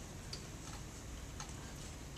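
Quiet classroom room tone with a few faint, irregularly spaced clicks: a pen tapping on an interactive whiteboard.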